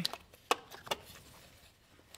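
Plastic wiring-harness connectors and wires being handled and pushed into place: a few light clicks and taps in the first second, then quiet handling.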